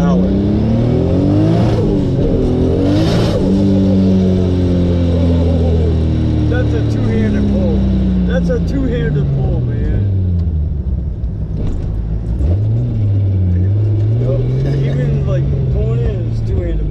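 Turbocharged 2JZ-GTE inline-six in a 1996 Lexus SC300 pulling hard under full throttle, heard from inside the cabin. The engine note climbs steeply, breaks at a gear change with a short burst of rushing noise, and climbs again. From about three seconds in the revs fall away slowly as the car coasts down, and near the end the engine pulls away gently again at low revs.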